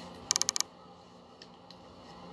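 A quick run of about five light clicks, then two fainter ticks, over a faint steady room hum.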